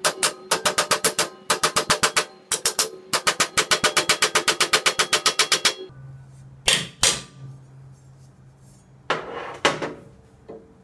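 Hammer blows on a steel flat bar clamped in a bench vise, bending it over 90 degrees: rapid runs of ringing metallic strikes, several a second, that stop abruptly near six seconds. Two short, noisy handling sounds follow, near seven and nine seconds.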